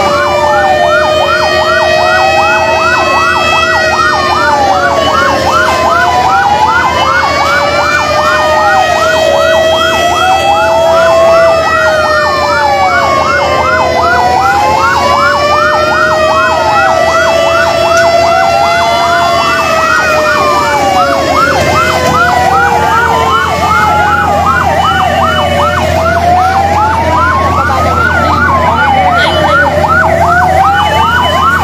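Several fire truck sirens sounding at once. A fast yelp warbles several times a second over slower wails that rise and fall every few seconds. A steady low drone underneath grows louder over the last third.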